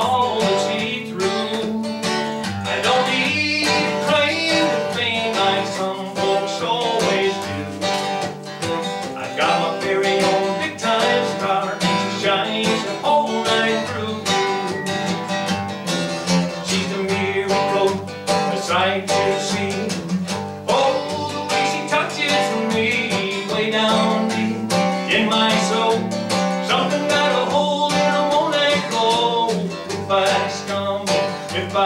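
Acoustic guitar strummed steadily as accompaniment to a man singing a country song.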